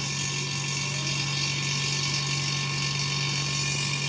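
Refrigerant vacuum pump running with a steady, even hum while it evacuates a car's air-conditioning system through a manifold gauge set.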